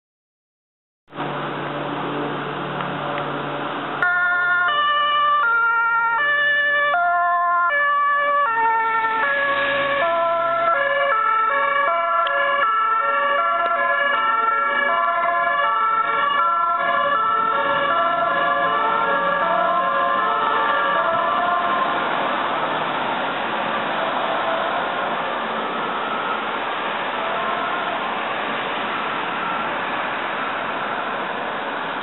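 Ambulance siren on an emergency run: the high–low two-tone siren switches between its notes about twice a second. It comes in about four seconds in over street traffic noise and grows a little fainter in the last third as the ambulance moves off.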